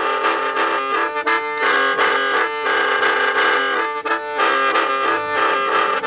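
Đinh năm, the Ê Đê gourd mouth organ with bamboo pipes, played solo: a reedy sound of several notes at once, some held steadily as a drone while others change in a quick repeating melodic figure.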